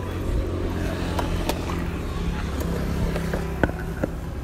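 A motor vehicle engine idling steadily with a low hum. A few light clicks sound over it, and one sharper click comes near the end.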